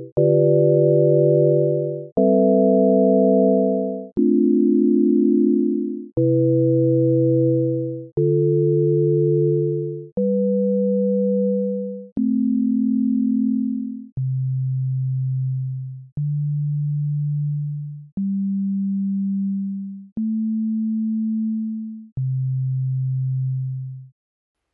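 Csound sine-tone synthesizer playing a looped chord progression, a new chord about every two seconds, each starting with a click and fading at its end. About halfway through the chords thin to one or two quieter notes as loops are removed.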